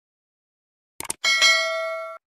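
Silence, then about a second in a short click followed by a notification-bell sound effect. It is a single ding of several clear steady tones that rings on and fades, the 'bell' of a subscribe-button animation.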